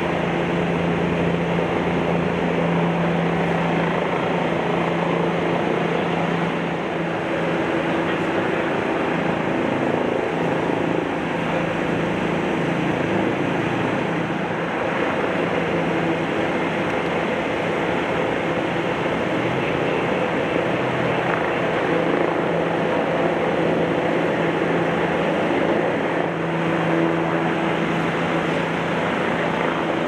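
Heavy-duty tow truck's diesel engine running steadily to power its crane boom as the wrecked car is hoisted on straps, a constant low drone with no let-up.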